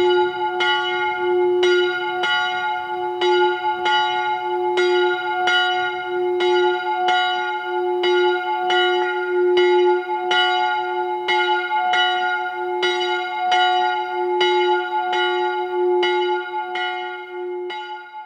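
A single chapel bell ringing, struck over and over in a steady rhythm at one pitch, fading near the end.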